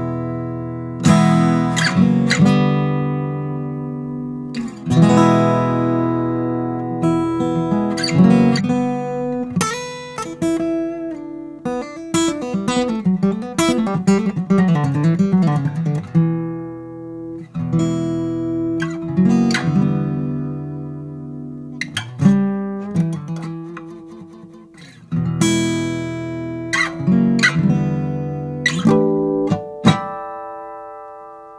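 PRS acoustic guitar picked in a riff: chords struck every second or two and left to ring out, with a quicker run of single notes in the middle. It is recorded in stereo with two microphones spaced 18 inches apart under the three-to-one rule, to keep it free of phase problems.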